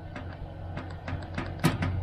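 Faint clicks and taps at a centre-pivot irrigation control panel as its percentage speed setting is raised, over a low steady hum.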